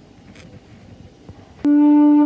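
Quiet pause with one faint short hiss, then a recorder starts a clear, steady low note about one and a half seconds in and holds it.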